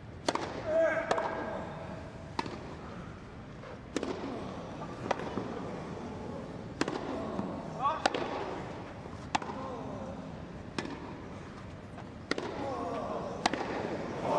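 Tennis rally on a grass court: a serve and then about ten sharp racket-on-ball strikes, roughly one every 1.2 to 1.5 seconds, with short voiced grunts after some shots. Crowd voices start to rise near the end.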